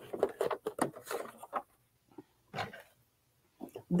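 Short plastic clicks and scrapes as an embroidery hoop is unclipped and slid off the embroidery unit's carriage arm, a cluster of them in the first second and a half and one more later on.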